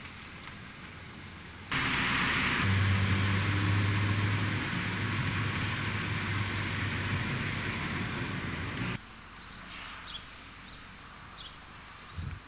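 Noise inside a moving car: a steady rush of road and wind noise with a low, even engine hum. It starts suddenly about two seconds in and cuts off abruptly about nine seconds in, leaving faint background sound.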